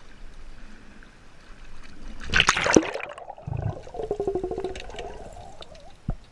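Action camera plunging into shallow sea water: a splash and rush of water a little over two seconds in, then muffled underwater sound with a bubbling gurgle.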